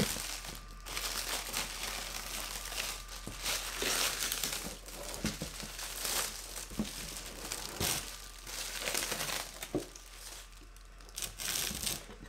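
Clear protective plastic film being peeled and pulled off a new headlight assembly, crinkling and crackling in irregular bursts, quieter near the end.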